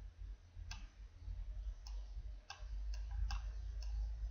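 Computer mouse button clicking, about six short irregular clicks, over a steady low hum.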